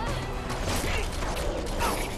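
Film action-scene sound design: mechanical clanking and creaking with rising whooshes about a second in and again near the end, music faint underneath.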